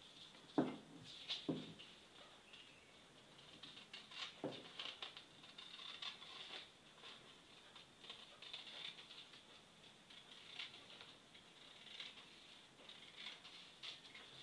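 Scissors cutting through pattern paper, a faint, irregular run of small snips and paper rustles.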